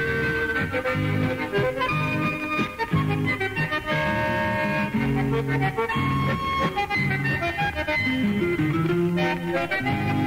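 Chamamé played on button accordion over strummed and plucked guitars with a bass line, in an instrumental passage without singing.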